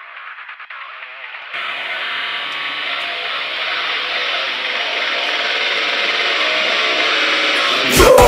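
Intro of a metalcore instrumental backing track. For about the first second and a half it is thin and muffled, as if filtered. It then opens out to full range and builds steadily louder.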